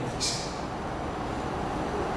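A pause in a man's speech: steady background room noise, with a short hiss about a quarter second in.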